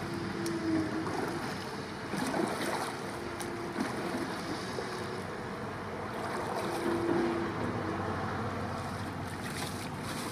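Double-bladed paddle strokes dipping and splashing in calm water beside a surfski, with wind on the microphone and a faint hum that comes and goes.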